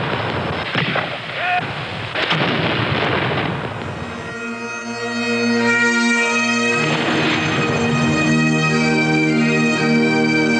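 Field cannon firing, two booms about a second and a half apart with a long rumble. About four seconds in, bagpipes start up, a slow tune played over their steady drones.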